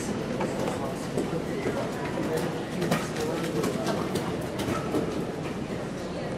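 Background chatter of voices echoing in a large indoor arena, with scattered knocks and clatter.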